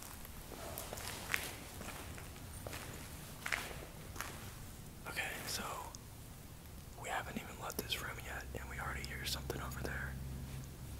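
Footsteps and scattered small knocks on a rubble-strewn floor, then hushed whispering voices in the last few seconds.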